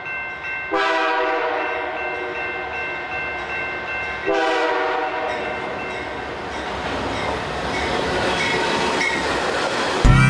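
Freight locomotive horn sounding two blasts at a level crossing, a long one about a second in and a shorter one near the middle, over the quick repeated ringing of the crossing's warning bell. Afterwards the rumble and wheel noise of the train passing grow louder.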